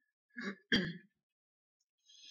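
A woman clearing her throat in two short sounds, within the first second.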